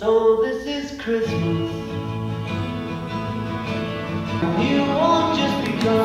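Christmas song played by an Alexa smart speaker in the room, with singing over instruments. It starts suddenly at the beginning and keeps playing steadily.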